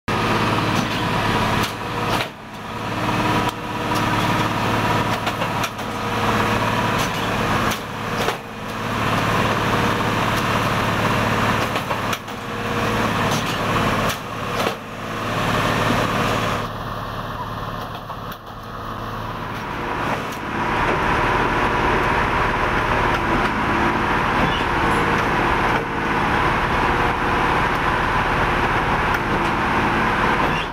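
Railway track tamping machine at work: its diesel engine runs with a steady low hum under louder working noise. In the first half the level keeps dropping briefly and surging back every second or two, as the tamping cycle repeats. After about the midpoint the sound becomes a steadier machine noise.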